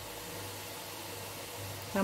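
Quiet room tone: a steady low hiss with a faint low hum.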